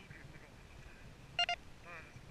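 Two short electronic beeps in quick succession, about a tenth of a second apart, over a low outdoor rumble.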